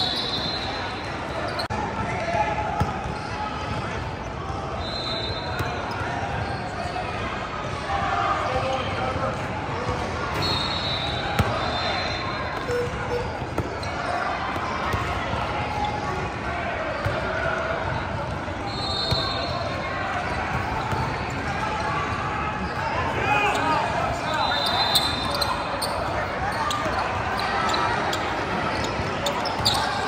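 Youth basketball game play in a large, reverberant gym: a basketball bouncing on the hardwood court, sneakers squeaking briefly on the floor about five times, and players' voices calling out.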